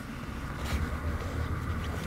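Steady low background rumble with a faint hiss, no distinct event.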